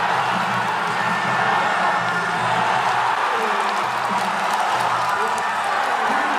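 Ringside fight music plays continuously over a cheering, shouting arena crowd, as a fighter is knocked down.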